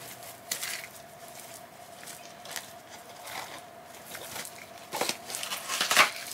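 Packaging being handled: scattered rustles and small clicks as a small red gift bag is opened and the box contents are sorted, with a cluster of louder rustles near the end.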